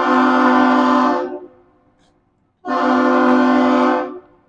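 Great Lakes freighter Philip R. Clarke's horn sounding two long, loud blasts about a second and a half apart as a salute.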